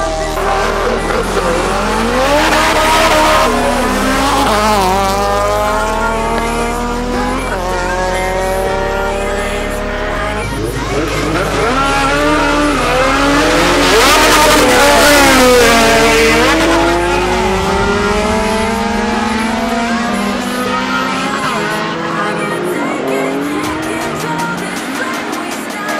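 Drag race car engines accelerating hard, their pitch climbing through each gear and dropping back at every shift, with tire squeal, over dance music with a stepped bass line that stops about two-thirds of the way through.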